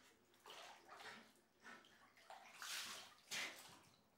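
Water in a filled bathtub sloshing quietly as a person shifts and slides down into it, in several short, irregular swishes.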